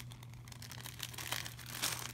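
Clear plastic zip-top bag crinkling as a hand handles it: a few soft, scattered rustles, the strongest near the end.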